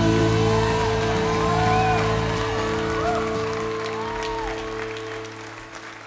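A live band's final held chord ringing out and slowly fading away, with voices in the crowd cheering and people clapping over it as the song ends.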